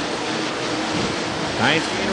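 Pack of UMP Modified dirt-track race cars running at speed: a steady, noisy engine roar.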